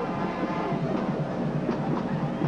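Steady background noise of a stadium crowd, with no single sound standing out.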